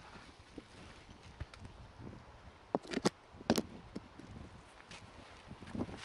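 A few light knocks and clicks, three sharper ones close together around the middle, over a quiet background.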